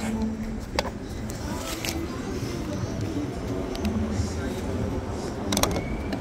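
Steady low outdoor rumble at a petrol station forecourt, with a few sharp clicks; near the end, a quick cluster of clicks as the fuel nozzle in the car's filler neck is taken in hand.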